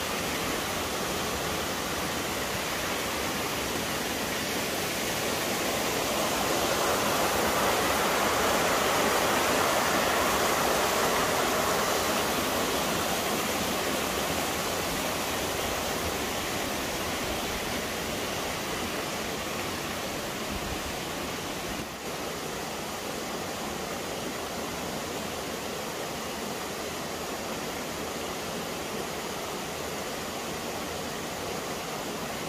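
Mountain stream rushing over rock cascades, a steady wash of water that swells louder about a quarter of the way in and then eases off.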